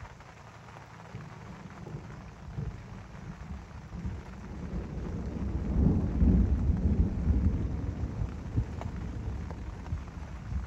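Rain falling steadily, with a low rumble of thunder that builds about five seconds in, is loudest a second or two later and slowly fades.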